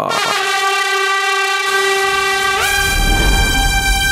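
Train horn sounding one long steady blast that steps up to a higher pitch about two and a half seconds in, with a low rumble coming in near the end.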